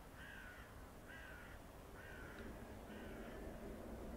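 A bird calling four times, about once a second, each call short and dipping slightly in pitch.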